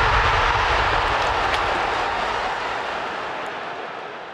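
A steady rushing, whooshing noise from a logo-animation sound effect, like wind or a passing jet, that slowly fades away.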